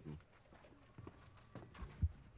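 Faint footsteps: a few soft, uneven steps from about a second in, with the last one near the end.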